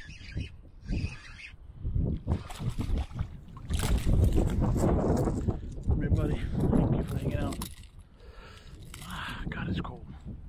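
A hooked fish splashing and thrashing at the water's surface beside a kayak as it is brought in and lifted out on the line, with water sloshing, irregular knocks and wind on the microphone.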